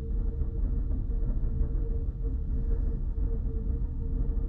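Steady low rumble of room background noise with a faint, steady hum above it.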